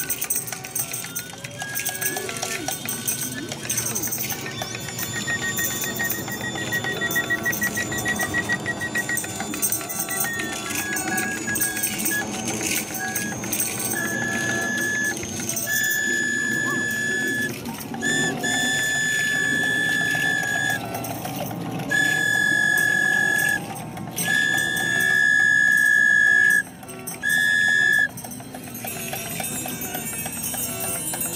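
Free-improvised ensemble music with violin, hand drums and small percussion. In the second half a loud, high, steady tone sounds five times on the same pitch, each one held for one to three seconds.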